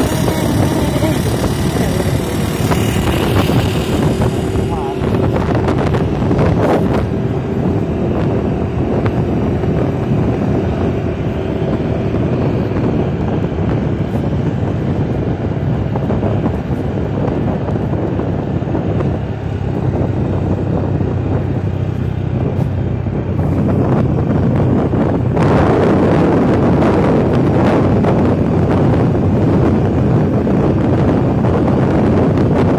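Motorcycle engine running steadily at cruising speed, heard from the moving bike, with wind rushing over the microphone; the wind grows louder about five seconds before the end.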